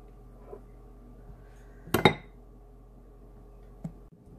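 A single sharp clink about two seconds in, a metal icing spatula knocking against the glass bowl of buttercream, with a faint tick before it and a small click near the end.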